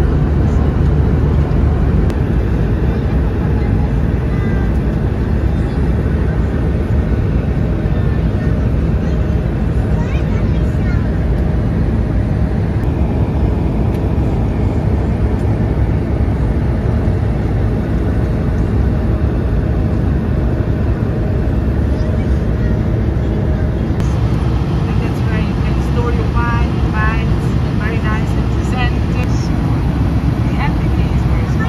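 Steady cabin noise of an Airbus A220 in flight: an even, low rush of engine and airflow noise heard from a passenger seat.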